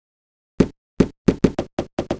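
A run of short knocks from an intro animation's sound effects, about seven in all: the first few loud and well spaced, then coming quicker and softer.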